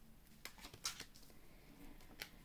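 Faint, soft clicks and rustle of a tarot card being drawn from the deck and laid face up on a cloth-covered table, a few light ticks about half a second to a second in.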